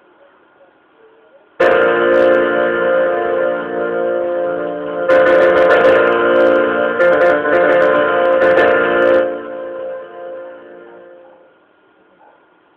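Piano chords on a keyboard: a loud chord struck about a second and a half in and another about five seconds in, each held and left to ring, fading out near the end.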